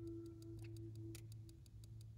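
Faint sustained ringing tone that wavers slightly and fades away about three-quarters of the way through, over a low steady hum, with a few faint light clicks.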